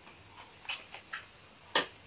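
Small cardboard cosmetics box being handled and opened, fingernails and flaps giving a handful of light clicks and taps, the sharpest near the end.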